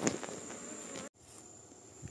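Faint insect sounds with a steady high-pitched tone, from bees and other insects around the hives. The sound drops out abruptly about halfway through and comes back quieter.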